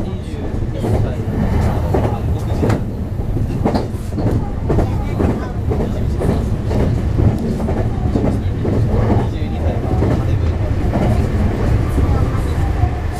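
Meitetsu electric commuter train running along the line, heard from inside the front car: a steady low rumble of wheels and running gear with repeated clicks and knocks as the wheels pass over rail joints.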